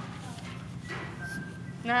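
A pause filled by low room background with a steady low hum. A woman's voice begins again near the end.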